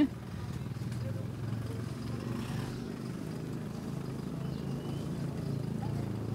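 Open-air street-market background: a low, steady vehicle engine hum under distant voices.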